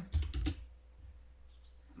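A few quick keystrokes on a computer keyboard, bunched in the first half second.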